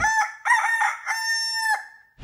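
A rooster crowing once as a sound effect: a cock-a-doodle-doo of a few short notes and then a long held final note that drops at its end, clean with no background noise behind it. It is the usual cue for morning.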